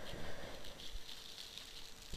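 Faint crinkling and rustling of a plastic bag and packaging as a bagged power cord is lifted out of a box.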